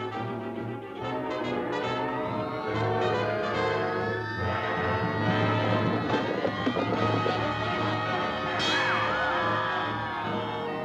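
Orchestral cartoon score led by brass, with a brief warbling tone near the end.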